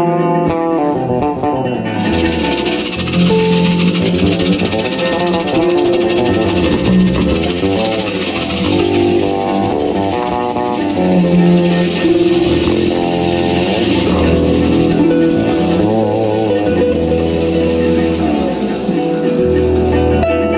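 Live jazz/world music from a pedal harp, fretless electric bass and hand percussion: plucked harp notes over a sliding low bass line. About two seconds in, a steady shaker hiss joins and keeps going.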